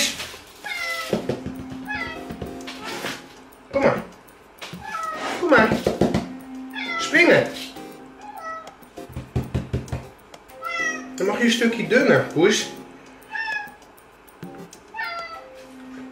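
Domestic cat meowing repeatedly: a string of short meows that fall in pitch, with a few louder, longer calls in between.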